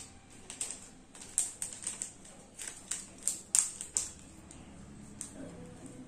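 Plastic packaging crinkling and crackling in quick, irregular clicks as a sealed plastic sleeve is handled and worked open. The crackles thin out after about four seconds.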